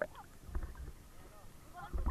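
Water sloshing and gurgling against a waterproof action camera's housing as it moves underwater, with low thumps, then splashing as it breaks the surface near the end.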